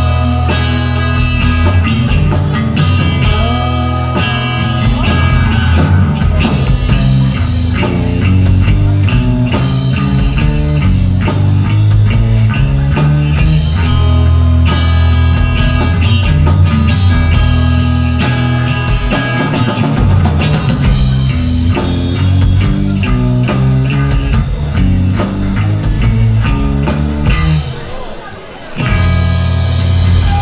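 Live rock band playing an instrumental passage on electric guitar, electric bass and drum kit, loud and steady, easing off only at the very end.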